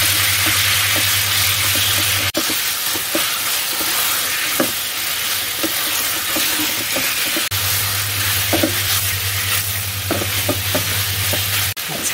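Cubes of fatty pork sizzling in hot oil in a nonstick wok while being stir-fried, a wooden spatula scraping and turning them against the pan. A low steady hum runs under it for part of the time.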